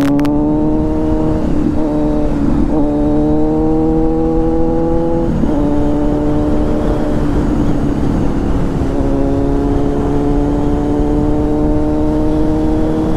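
Sport motorcycle engine heard from the saddle, pulling steadily under acceleration with its note rising slowly. The note drops briefly about five seconds in as the bike shifts from fourth to fifth gear, then climbs again.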